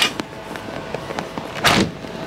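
Telehandler cab door and sliding window being handled: a sharp click at the start, then a longer swish about one and a half seconds in.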